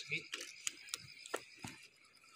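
Campfire crackling: a scatter of sharp, irregular pops from the burning wood.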